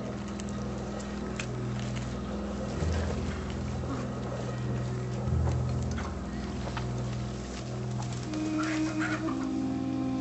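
Chickens clucking in a village soundscape, with short scattered clucks and clatters, over a low, steady drone of background music.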